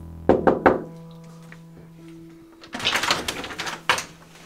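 Three quick knocks on a wooden door, followed near the end by about a second of scraping noise and a sharp click.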